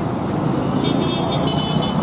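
Road traffic noise from motor vehicles running along a town street, a steady rumble.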